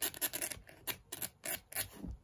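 Fingers scratching and rubbing the rough textured fabric patch on a touchy-feely board book's elephant ears, in quick repeated strokes about four a second.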